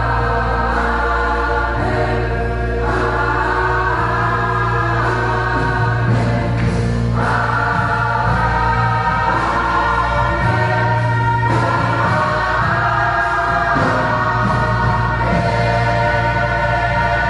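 Large gospel choir singing in full harmony, holding long chords that change every second or two, over a low sustained accompaniment.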